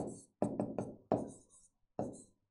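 Pen tapping and scratching on a writing board during handwriting: a quick run of five or six sharp taps, each with a short ring, with a faint high scratch of the pen dragging between them.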